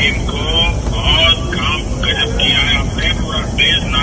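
A man's voice speaking through a phone's loudspeaker, thin and cut off above the mid-range, over the steady low rumble of a moving vehicle.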